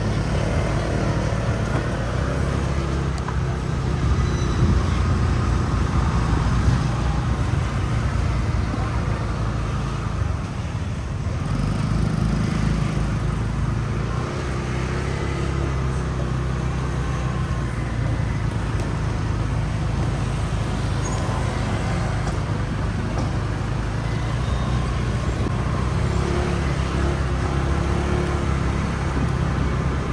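Street traffic: motor scooters running and passing close by over a continuous low rumble of traffic.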